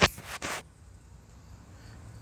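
Handling noise as large okra leaves brush and knock against the phone held among them: a sharp knock at the start, then a short rustle about half a second in.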